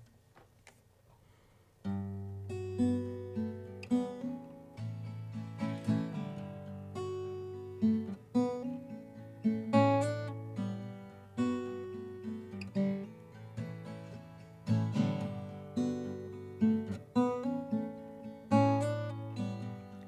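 Solo acoustic guitar playing the instrumental introduction to a slow song, beginning about two seconds in after a brief quiet, with a mix of single notes and chords over ringing bass notes.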